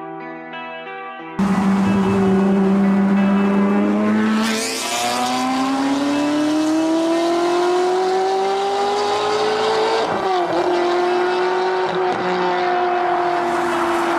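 Ferrari 360's V8 accelerating hard through the gears. It cuts in suddenly about a second and a half in, the revs rise, drop at an upshift about five seconds in, rise again to a second shift about ten seconds in, then the note eases slightly as the car pulls away. The first second or so is music.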